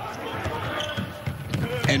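A basketball dribbled on a hardwood court, bouncing repeatedly as it is brought up the floor, with little crowd noise around it.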